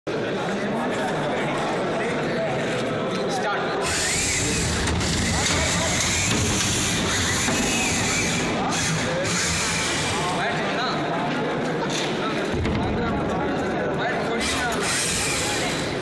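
Crowd chatter around a robot combat arena, with a combat robot's small electric motors whirring in loud spells from about four seconds in, broken by a few sharp clicks.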